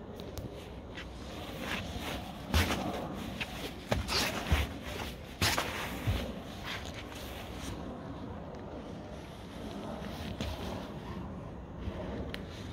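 Irregular footsteps and scuffs on paving, clustered in the first half, over steady outdoor background noise.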